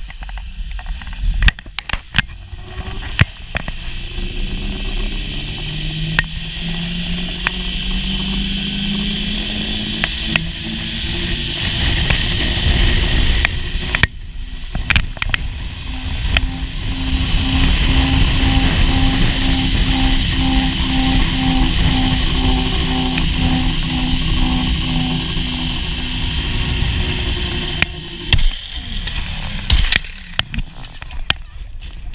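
Zip-line trolley running along a steel cable with wind rushing over the microphone: a whir that rises in pitch as it gathers speed, later pulsing about twice a second. Clicks and knocks near the end as the rider arrives at the landing platform.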